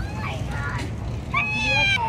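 A toddler whining and crying: a short, fainter whimper at the start, then a louder, high-pitched, drawn-out wail in the last half-second or so.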